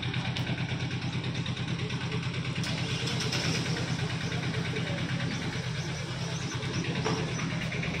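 A motor vehicle's engine idling steadily with an even pulsing beat.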